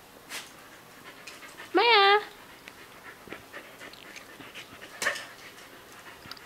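Siberian husky giving one short vocal call that rises and then holds about two seconds in, with panting breaths around it.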